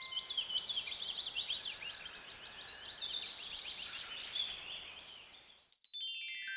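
Many small birds chirping and twittering together over a soft hiss, fading out about five and a half seconds in. A run of bright mallet notes, like a glockenspiel, starts just before the end.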